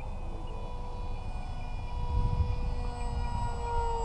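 Electric motor and propeller of a radio-controlled flying wing in flight, a steady high whine that dips slightly in pitch near the end, over a low rumble.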